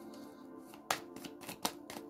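A deck of tarot cards being shuffled by hand, with sharp card snaps about a second in and twice near the end. Soft background music plays underneath.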